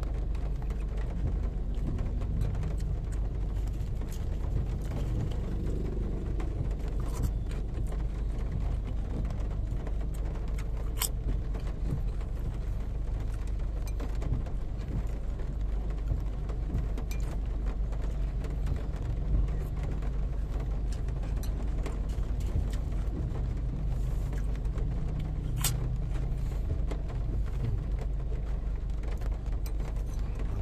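Steady low rumble of a car idling, heard inside the cabin, with a few light clicks of a spoon against a bowl.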